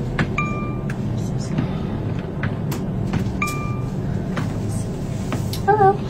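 Aircraft flight-attendant call chime sounding twice, about three seconds apart, each a single clear half-second ding, as a passenger presses the overhead call button. Under it the steady low hum of the airliner cabin.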